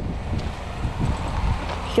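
Wind buffeting the microphone: a steady low rumble with a faint hiss over it.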